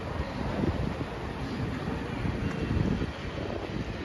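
City street noise: a steady traffic rumble mixed with wind buffeting the microphone, with no distinct events standing out.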